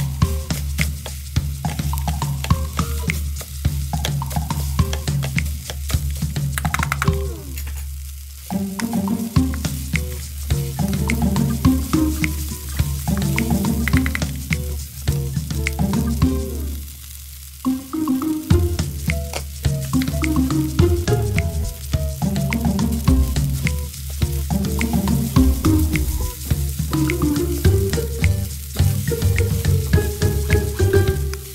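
Vegetable fried rice sizzling in a nonstick pan while a spatula stirs and scrapes it, with frequent clicks of the spatula against the pan. Background music with a steady bass line plays throughout.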